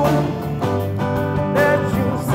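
Live band playing a song: electric guitar, bass, piano and drums, with a sung line coming in near the end.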